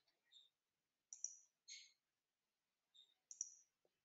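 A few faint computer mouse and keyboard clicks over near silence.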